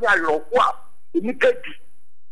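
A man's voice speaking in short, clipped phrases over a recorded line, with a faint steady high whine, then cutting out to silence near the end.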